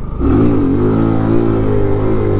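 Kawasaki Z125 mini bike's single-cylinder four-stroke engine revving up sharply as the throttle is opened to lift the front wheel into a wheelie. The revs then hold steady through the wheelie.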